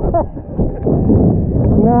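Wind buffeting the microphone in a heavy, uneven rumble, with short shouts from players at the start and again near the end.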